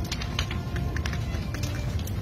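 A house fire burning: irregular crackling and popping of burning timber over a steady low roar, with faint music underneath.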